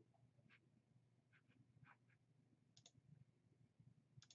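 Near silence broken by a few faint computer mouse clicks, scattered through, with a quick cluster about three seconds in.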